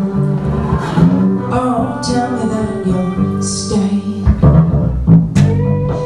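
Live music from an electric bass guitar and a guitar played flat on the lap, the bass getting heavier about four seconds in.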